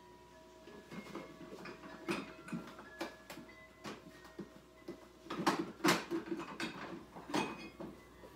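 Someone rummaging in an open refrigerator: irregular knocks and clinks of bottles and containers being moved about, loudest in a cluster about five and a half to six seconds in.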